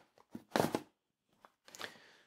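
Cardboard and paper watch packaging being handled: a click, then a short scrape or rustle about half a second in, and softer rustling near the end.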